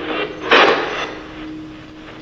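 Two-way radio static: hiss that swells into a loud rush about half a second in and fades over the next half second, with a faint steady hum underneath.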